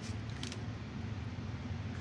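A steady low hum with two short scratchy clicks near the start as a wooden skewer carves into soft clay.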